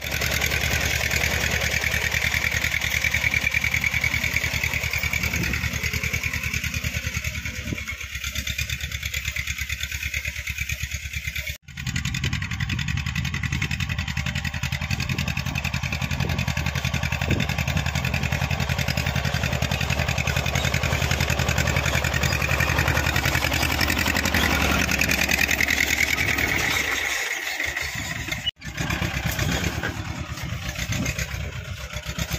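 Massey Ferguson diesel tractor engine running steadily under load while pulling a tined cultivator through the soil. The sound cuts out briefly twice, about a third of the way in and near the end.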